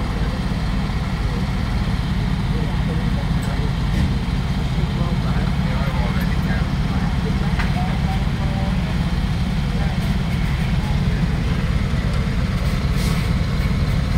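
Heavy-haulage lorry's diesel engine idling steadily close by, a constant low rumble.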